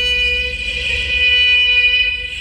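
A trumpet holds one long high note at a steady pitch, growing brighter and a little louder in the second half, over a low electronic rumble, in free-improvised music.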